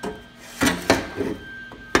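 Several sharp knocks and clunks from a rusty exhaust manifold being handled and shifted on a concrete floor.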